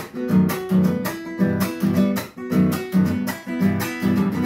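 Acoustic guitar strummed in a chacarera rhythm, solo, with regular chord strokes and short breaks between phrases.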